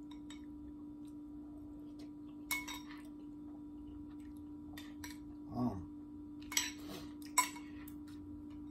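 Metal spoon clinking and scraping against a glass bowl while eggs are scooped: one clink a few seconds in, then a quick run of clinks near the end, the sharpest of them just before the end. A brief low hum of a voice comes in the middle, over a steady low hum in the room.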